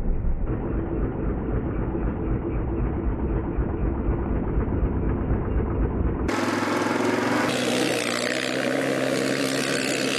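ATV engine running while the quad is ridden. For about the first six seconds it is muffled, mostly a low rumble; then it changes abruptly to a clearer, steady engine note.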